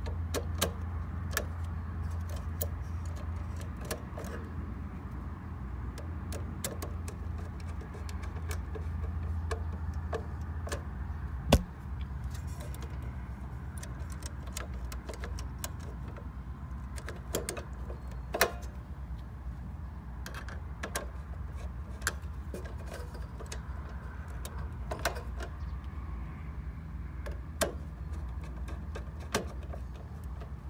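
Scattered clicks and taps of a screwdriver and wires against the metal terminals and box of a pool pump timer as terminal screws are loosened and wires fitted, with one louder knock about eleven seconds in. A steady low hum runs underneath.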